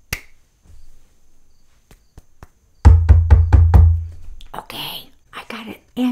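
Paper and hands handled right against a desk microphone: a few faint ticks, then about a second of rapid knocks, around seven a second, over a deep thud on the mic body, followed by a short paper rustle.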